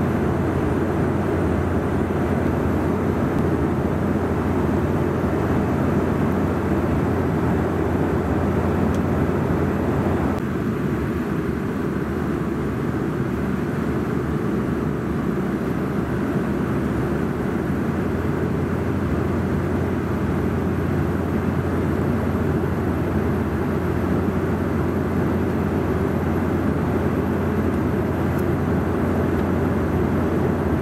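Steady cabin noise of a Bombardier CRJ700 regional jet in flight, heard from inside the cabin: an even, deep roar of airflow and its twin rear-mounted turbofan engines. It drops slightly in level about ten seconds in.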